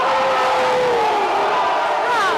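Marching band and its members in a concrete tunnel, giving a loud, echoing din of brass and shouting voices. A held note slides down in pitch during the first second or so, and a few more falling notes come near the end.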